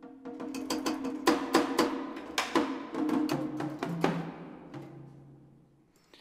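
Sampled Japanese percussion kit from Project SAM's Orchestral Essentials, played from a keyboard. A flurry of sharp drum and wood hits with low pitched drum tones ringing under them, drenched in reverb. The hits thin out about four seconds in and the sound decays away.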